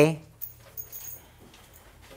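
A man's voice finishing a drawn-out word, then a pause of faint room tone with a couple of small soft noises.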